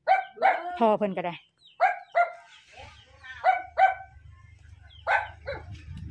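A dog barking: six short barks in three pairs, a second or more between pairs.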